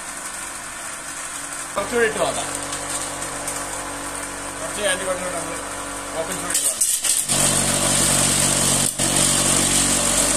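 Electric cotton candy machine running, its motor-driven spinner head giving a steady hum and hiss as sugar floss is spun into the bowl; the sound becomes louder about seven seconds in. Brief vocal sounds come around two and five seconds.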